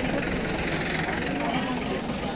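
Outdoor crowd talking, many voices overlapping, over a steady low engine rumble.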